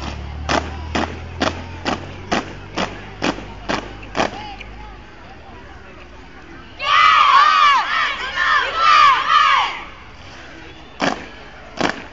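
Marching boots stamping in unison on pavement, about two steps a second for four seconds, from a foot-drill squad. Then a loud burst of many voices shouting together for about three seconds, and a couple more stamps near the end.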